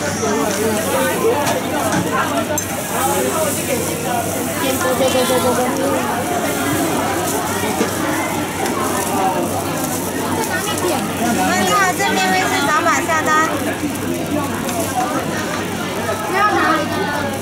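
People talking over one another, with a steady faint hiss from a hot crepe griddle as batter is spread and eggs are cracked onto it.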